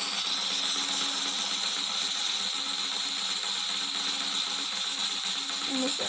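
Online spinner-wheel app's clicking sound effect as the wheel spins: a rapid, steady ratcheting tick.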